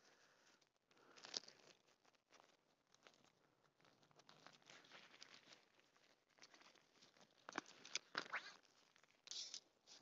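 Mostly near silence, with faint rustling and a few soft clicks, gathered in the last few seconds: the hammock tent's poles being taken out of their fabric bag and handled.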